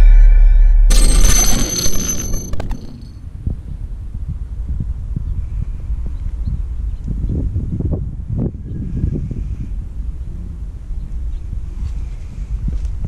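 An electronic logo sting ends with a deep, loud bass boom and a bright crash that die away over the first two to three seconds. After that, an uneven low rumble with irregular bumps, typical of wind buffeting and handling noise on a handheld camera microphone outdoors.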